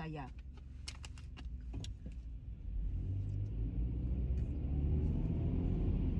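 A few sharp clicks as a plastic water bottle is handled, then the low rumble of the car interior swelling steadily louder.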